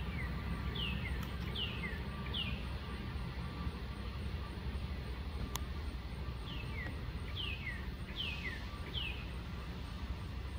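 A bird singing two runs of four repeated, clear downward-sliding whistles, each followed by a lower slur, with a pause of about four seconds between the runs. A steady low rumble lies under it, with one sharp click near the middle.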